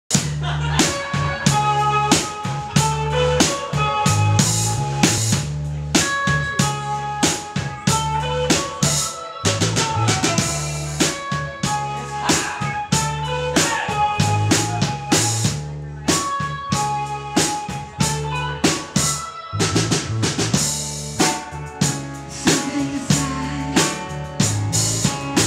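Live rock band playing an instrumental psych groove: a drum kit keeps a steady beat under a twelve-string electric guitar, an electric bass and a synth or keyboard. The beat briefly drops out twice, a little before 10 seconds in and again just before 20 seconds.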